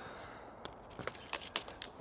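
A few light clicks and knocks from a PVC-pipe antenna reflector frame being handled and lifted, over a faint outdoor background.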